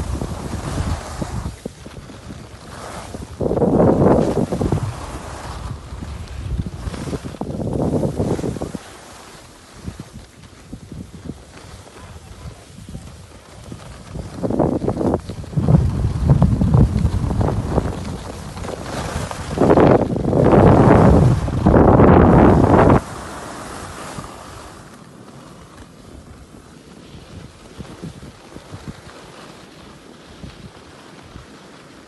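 Wind buffeting the microphone of a camera carried at speed down a groomed snow piste, rushing in loud surges. The loudest surge cuts off suddenly about three quarters of the way through, leaving a quieter rush.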